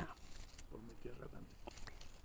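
Quiet pause with a faint voice off to one side, a man chiming in, and a few soft clicks of handling.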